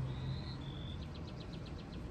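A bird singing: two short whistled notes, the second a little lower, then a quick run of about eight short falling notes. A steady low hum runs underneath.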